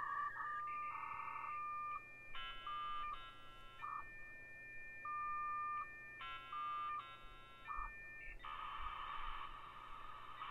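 US Robotics Courier V.Everything modem's speaker playing its connection handshake as it negotiates a 9,600 bps link. A series of steady single tones alternates with two short runs of stacked chord-like tones, then a steady hissing data carrier takes over about eight seconds in.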